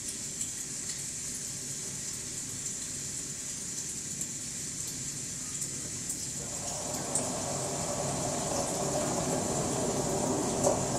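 Soundtrack of a screened video artwork played over a lecture hall's speakers: a steady rushing noise with a high hiss. About six and a half seconds in, a mid-pitched layer comes in, and the sound grows slowly louder.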